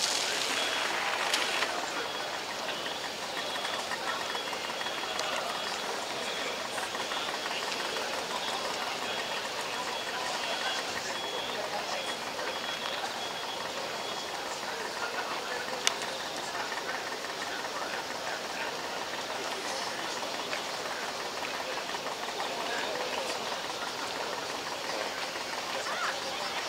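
Portable fire pump engine running steadily under a continuous noisy hiss, with a single sharp click about sixteen seconds in.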